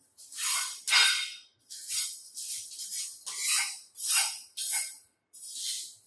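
Loose foundry moulding sand being brushed and scraped across a bench by hand, in a series of about nine short, scratchy strokes roughly every half second.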